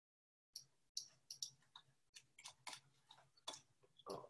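Near silence with about a dozen faint, short clicks at irregular intervals over a faint low hum.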